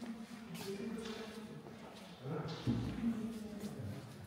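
Indistinct talking of people close by, with a low thump a little past the middle.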